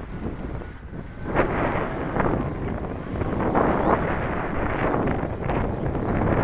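Gusty wind buffeting the microphone, with a faint high whine from a radio-controlled model airplane's motor flying overhead, its pitch shifting about four seconds in.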